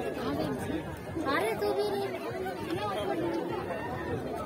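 People talking and chattering, several voices at once, with no other distinct sound.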